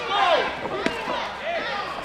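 Men's voices calling out, with one sharp smack a little under a second in: a kickboxing blow landing.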